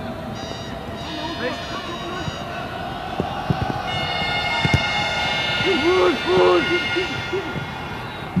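Football match broadcast sound: stadium background noise with a voice speaking, and a long steady horn-like tone sounding for about three seconds in the middle.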